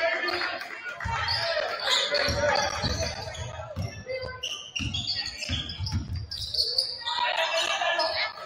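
A basketball dribbled on a hardwood gym floor: a run of uneven bounces starting about a second in, mixed with short high squeaks and the voices of players and crowd in a large, echoing gym.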